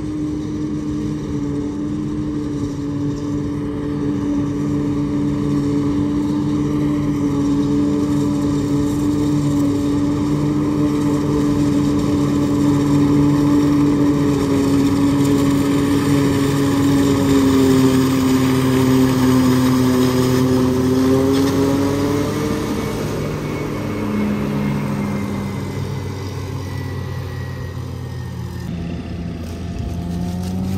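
New Holland self-propelled forage harvester chopping standing corn for silage, its engine and cutterhead running as a steady, loud hum under load. The hum grows louder as the machine draws near, sags a little in pitch about two-thirds through, and comes back up. Near the end it gives way to a tractor engine revving up.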